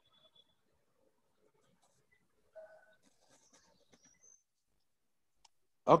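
Near silence on a video-call audio line, with a faint short blip about two and a half seconds in and a tiny click near the end.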